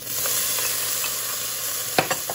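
Bacon tipped into a preheated, smoking-hot pot with olive oil, sizzling loudly at once and holding steady. A single sharp knock near the end.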